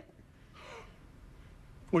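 A person's faint, short breath about half a second in, in an otherwise quiet pause.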